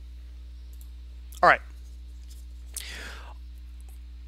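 A man's voice says one short word about a second and a half in, then gives a brief audible breath near three seconds, over a steady low electrical hum in a small room.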